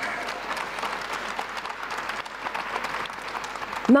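Audience applause: many people clapping together at a steady level, stopping just before the end as a woman's voice resumes.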